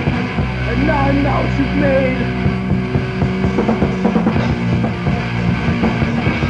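Rock band music: held low chords with regular hits running through them, and a few sliding notes about a second in.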